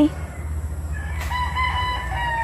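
A rooster crowing: one long, drawn-out call that starts about a second in and holds a steady pitch.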